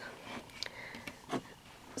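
Quiet room tone with two faint, short clicks: one just after half a second in and a slightly louder one a little over a second in.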